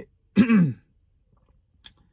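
A man clearing his throat once, a short sound with a falling pitch, followed near the end by a faint click.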